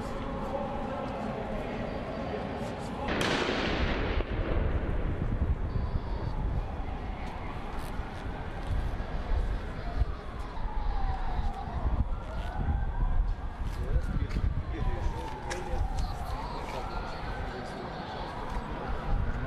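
Emergency siren wailing, rising and falling over and over, over loud outdoor street noise. There are scattered sharp cracks, and a sudden loud burst about three seconds in.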